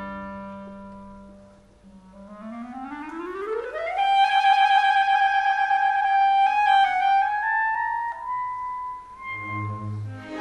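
A solo clarinet in a symphony orchestra plays an unaccompanied cadenza passage. A held orchestral chord fades away, then the clarinet runs smoothly upward to a long, loud high note, and moves on to a few more notes near the end.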